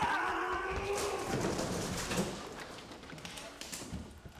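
Two stuntmen crashing through a wooden stair railing and tumbling down a staircase: a clatter of breaking spindles and many knocks and thuds that slowly die away, with a shout in the first second.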